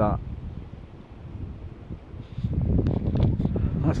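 Wind rumbling on the microphone, quieter at first and louder from about halfway through.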